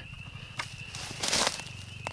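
A brief rustle in dry grass about a second and a half in, after a faint click, over a quiet outdoor background.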